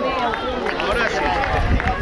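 Several high-pitched voices shouting and calling out over one another, with no clear words, plus a low rumble on the microphone near the end.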